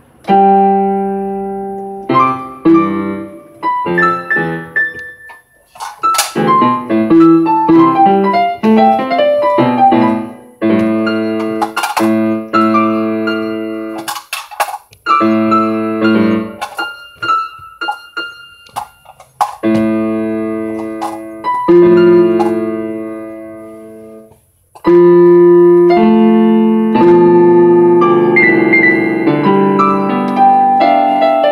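Piano played solo: struck chords and runs of notes that ring and fade away, in phrases with brief breaks between them.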